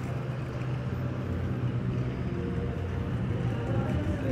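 A vehicle engine running steadily, with the faint tones of an ice cream truck jingle coming in past the halfway point.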